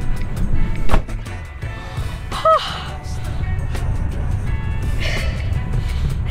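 Low, steady rumble inside a vehicle's cabin, with faint background music, a single sharp knock about a second in, and a short voiced exclamation a little before the middle.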